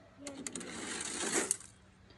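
Small toy car running down a plastic playground slide: a rattling scrape that grows louder for about a second, ending with a click as it reaches the bottom.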